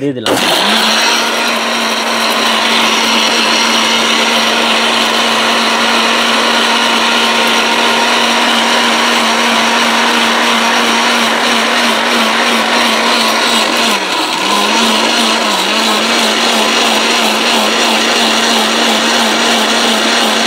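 ORPAT mixer grinder running with its steel jar loaded. The motor starts abruptly and holds a steady, loud whirr, dipping briefly in pitch a couple of times about two-thirds of the way through.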